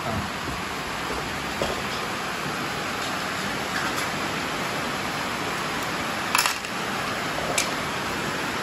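A metal spoon clinks sharply against dishes a few times, the loudest two clinks close together about six seconds in. Under it runs a steady hiss of rain.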